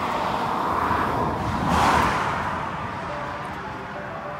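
A vehicle passing on the highway: tyre and engine noise swells to a peak about two seconds in, then fades away.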